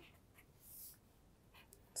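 Near silence, with one faint, short scratch of a pen stroke on chart paper about halfway through.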